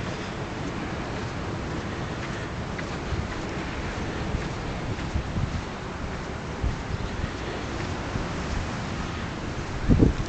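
Wind rushing over the camera microphone, a steady noise heaviest in the low range, with a few soft irregular thumps.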